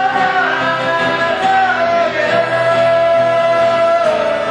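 Live acoustic band music: two acoustic guitars played under a man's singing, which holds long, slowly bending notes.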